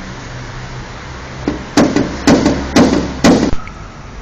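A light tap, then four sharp hammer taps about half a second apart on a car's sheet-metal body panel: paintless dent repair, tapping the dented metal back into shape.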